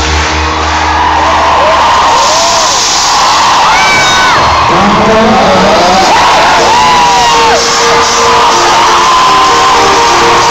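Concert audience cheering and screaming, with many individual high shrieks rising and falling in pitch, over live pop music from the stage. The heavy bass cuts out at the start, and a steady held note comes in about two-thirds of the way through.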